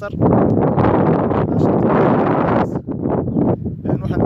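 Loud, steady wind noise buffeting a phone's microphone, with a brief dip near three seconds.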